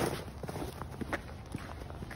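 Winter boots crunching in trodden snow in quick steps, about two a second, the loudest crunch right at the start. In the second half the steps turn to quieter, sharper taps as the boots come onto bare wet pavement.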